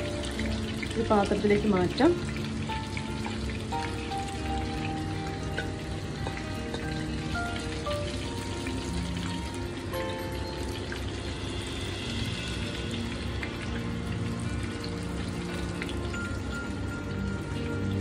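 Spice-coated fish pieces sizzling as they shallow-fry in oil in a pan, under steady background music. A brief voice comes in about a second in.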